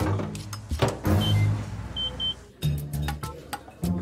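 Microwave oven keypad beeps: a sharp click, then a single short high beep about a second in and two quick beeps at about two seconds, as the oven is set to reheat food. Background music plays underneath.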